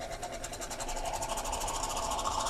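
Portable growler dispenser's tap sputtering as the growler runs out of beer, with pressurized CO2 and foam spitting out in a rapid, even pulsing that grows gradually louder. The hosts think there is too much pressure in the growler.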